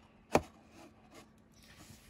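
A single sharp tap as the cardboard pipe box is set down on the tabletop, followed by faint rustling of packaging being handled.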